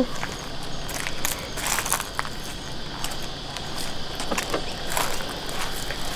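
Outdoor ambience: a steady high drone of insects, with scattered footsteps and rustling as someone walks round the car.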